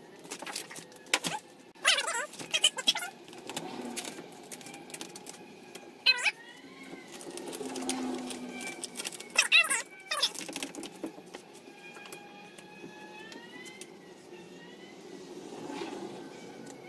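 Vinyl wrap film being squeegeed and pressed onto a car door by hand, pushing the air out from under it: crinkling and rubbing with sharp crackles, and a few short squeaks, mostly in the second half.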